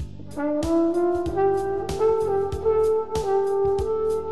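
Roy Benson flugelhorn played through a Yamaha Silent Brass mute. It comes in about half a second in with a short phrase of notes stepping upward, then holds long notes, over a funky backing track with a steady drum beat.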